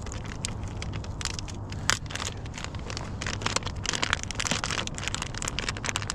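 Crinkling plastic of a Berkley PowerBait soft-bait bag being handled and opened, an irregular run of small crackles with a sharper click about two seconds in.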